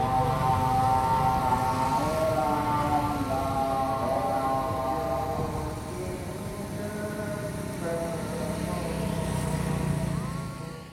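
Call to prayer amplified from mosque loudspeakers, long slowly wavering chanted notes, with more than one call overlapping, over a steady low rumble of city traffic.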